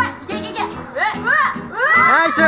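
Children shouting and crying out excitedly at play, short rising-and-falling cries about a second in, over steady background music.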